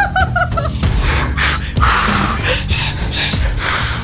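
Laughter trails off about half a second in, then men breathe hard in quick, loud puffed breaths, labour-style breathing through the pain of birthing-simulator stimulation, over background music.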